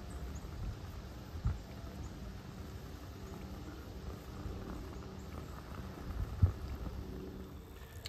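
Wind buffeting the microphone: a low, uneven rumble, with two brief bumps, about one and a half seconds in and again about six and a half seconds in.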